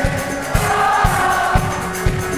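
Live Italo-pop band playing: male and female voices singing held notes over drums, bass and electric guitar, with the kick drum landing about twice a second.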